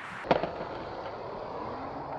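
Skateboard on asphalt: one sharp clack of the board about a third of a second in, then a steady rolling noise from the wheels.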